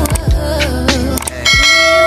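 Background music with a beat, joined about one and a half seconds in by a ringing bell chime. The chime is the notification-bell sound effect of a YouTube subscribe animation.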